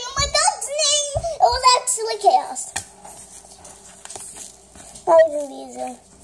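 A young girl's high-pitched voice: wordless vocal sounds for the first two seconds or so, then quieter, then one sound that falls steeply in pitch near the end.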